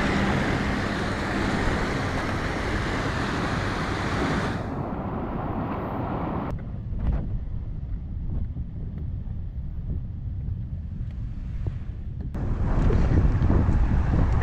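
Wind buffeting the microphone over lake waves washing against a concrete shoreline. The hiss turns duller, mostly a low rumble, about five to six seconds in, and comes back fuller near the end.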